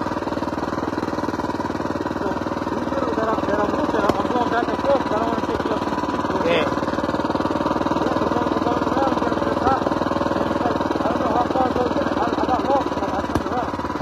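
A mini bike's Predator Ghost 212cc single-cylinder four-stroke engine running steadily while riding, at a fairly even pitch and level.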